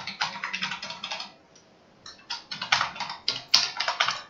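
Typing on a computer keyboard: a run of quick key clicks, a pause of just under a second, then another run of clicks.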